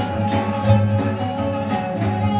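Live Persian classical music from a small ensemble: plucked string notes over sustained bowed-string tones, in a steady flow.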